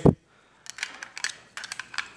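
Plastic bulk film loader being handled, giving a run of small, irregular clicks and taps that start about half a second in.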